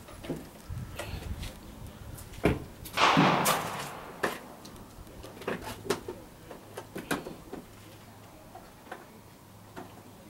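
A Pachmayr Dominator single-shot pistol in 7mm-08 Remington fires once about three seconds in. A sharp click of the hammer falling comes a moment before the shot, the sign of a delayed primer (hangfire). Several lighter clicks follow.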